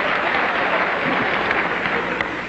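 A lecture-hall audience applauding and laughing: a steady, even wash of clapping and laughter that holds at one level throughout.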